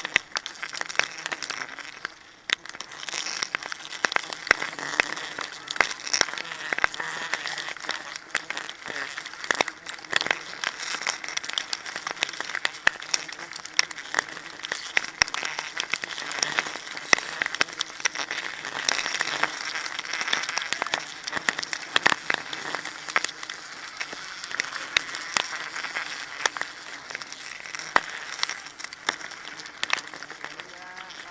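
Rustling and crackling of leaves, bark and clothing rubbing close to the microphone as a climber moves up a tree, with many small clicks and snaps.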